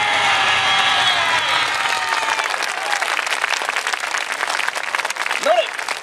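Outdoor crowd applauding at the end of a dance performance, with many voices calling out over the first couple of seconds before the clapping takes over.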